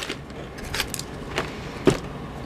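Plastic snack bags crinkling as they are handled and set into a cardboard box: a few short crackles, then a soft thump near the end.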